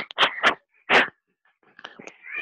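Felt-tip marker squeaking on a whiteboard as digits are written: about four short strokes in the first second, then a few faint ticks near the end.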